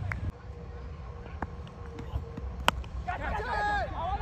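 Open-air ambience of low rumble with a single sharp click a little past the middle, then, from about three seconds in, high-pitched voices calling out.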